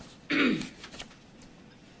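A person clearing their throat once, about a third of a second in, with a short falling vocal grunt, then quiet room tone.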